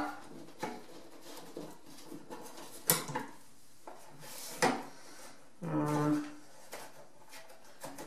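Small white plastic housing being fitted onto its metal wall bracket: light scraping and small ticks, with two sharp clicks about three seconds in and halfway through as it seats. A short low hum from a person comes near the middle.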